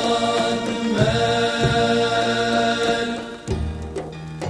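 Male vocal group singing long-held notes together in a chant-like style, with low sustained tones underneath. The phrase breaks off about three and a half seconds in, and a lower held note begins.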